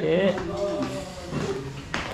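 Speech: voices talking in a restaurant dining room, with a short click near the end.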